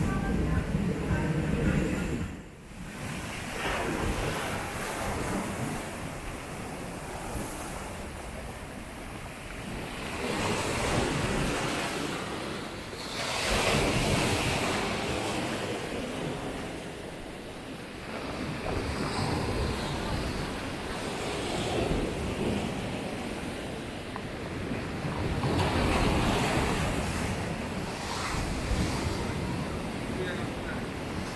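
Waves washing onto a pebble beach, the surf rising and falling in swells every several seconds, with wind on the microphone.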